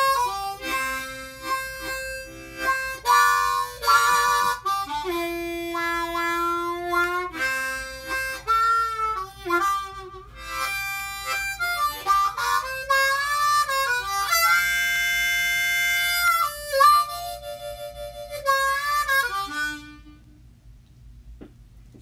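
Custom Hohner Crossover diatonic harmonica in C, played solo cupped in both hands: a run of single notes, some bent or wavering in pitch, with a chord held for about two seconds midway. The playing stops about two seconds before the end. The player finds it super responsive and strongly resonant.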